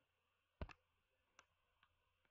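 Faint clicks at a computer: a quick pair about half a second in, a single click just under a second later, and a fainter one near the end, with near silence between.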